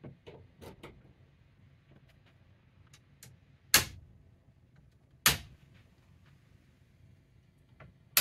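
Circuit breakers in a residential breaker panel being switched on by hand: two sharp, loud snaps about a second and a half apart, after a few fainter clicks and handling sounds.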